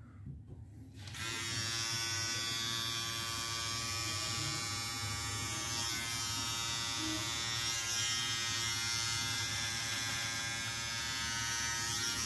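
Nova electric beard trimmer switched on about a second in, then running with a steady buzz as it trims a beard.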